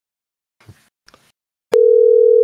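A single loud, steady electronic telephone tone, under a second long, that starts abruptly near the end and cuts off with a click.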